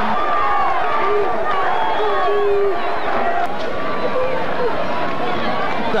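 Football stadium crowd cheering and shouting, many voices overlapping at a steady, loud level.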